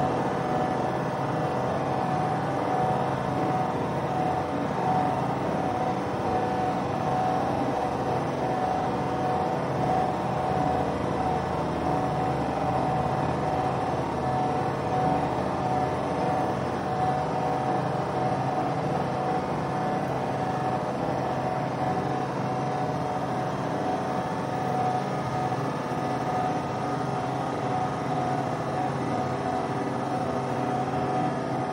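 Steady city background noise of distant road traffic with a constant hum, unchanging throughout.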